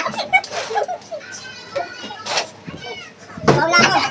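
A small group of people's voices calling out and laughing, with one short sharp knock about two seconds in and a loud burst of shrieking near the end.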